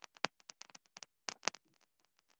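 A quick run of small, irregular clicks and taps, two of them louder, about a quarter second and a second and a half in; they thin out near the end.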